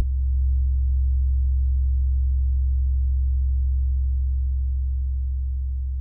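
A deep, steady drone from the film's soundtrack: one low sustained tone with overtones, starting as the music before it cuts off and slowly fading towards the end.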